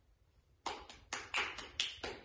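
A few hand claps, irregularly spaced, starting about two-thirds of a second in.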